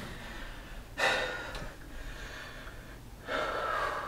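A man breathing hard while catching his breath between sets of push-ups: two loud, rushing breaths, one about a second in and one near the end.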